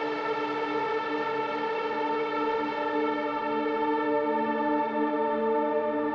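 Sustained dark drone from the Cinematic Cymbals Double Espresso Dystopian sample library: bowed-cymbal samples heavily processed through modular and granular synthesizers and tape machines. Several steady pitches are held together, and a lower tone swells in about four seconds in.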